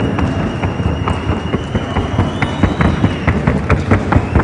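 Hoofbeats of a Colombian criollo horse in the trote y galope gait: a quick, uneven run of sharp clicks, several a second.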